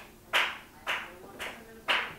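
Four sharp claps, evenly spaced about two a second, each dying away quickly.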